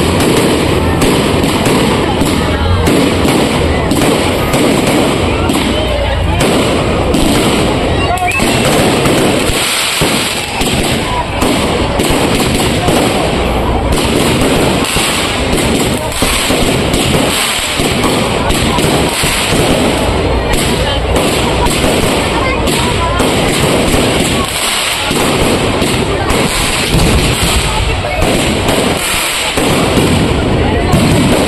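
Aerial fireworks firing in a dense, loud barrage: rapid overlapping bangs and crackling bursts, with hardly a break.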